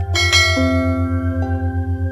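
A bright bell chime rings just after the start and fades over about a second, the notification-bell sound effect of a subscribe-button animation. Under it runs background music: held synth notes and a low drone pulsing about eight times a second.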